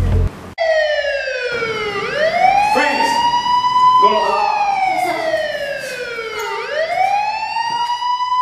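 Emergency-vehicle siren wailing, starting about half a second in: its pitch slides slowly down, then swoops back up, and does so twice.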